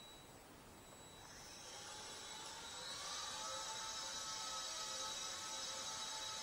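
The 4 mm coreless motor and propeller of a sub-6-gram micro RC airplane, running with a high whine that fades in about a second in, grows louder until about three seconds in, then holds steady.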